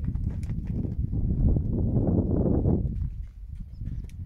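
Small hooves of miniature donkeys thudding on packed dirt as they run and play, over a steady low rumble.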